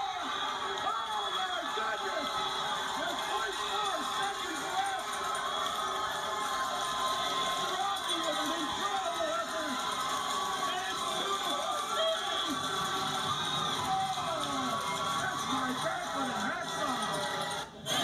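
Crowd of spectators cheering and yelling in a hockey arena right after a last-second game-winning goal, with music playing underneath, as picked up by a phone. The sound cuts off sharply near the end.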